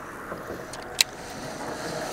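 Fishing reel being cranked fast on a crankbait retrieve: a steady whirring, with one sharp click about a second in.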